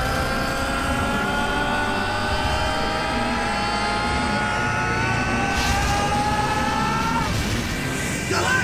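A long, strained battle yell held for about seven seconds, slowly rising in pitch and breaking off near the end, over a low rumble.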